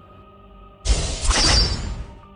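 A loud transition sound effect: a sudden noisy crash-like burst that starts a little before the midpoint and lasts about a second, over soft background music.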